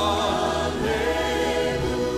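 Live gospel worship song: a choir of voices swells in together, singing held notes over the band.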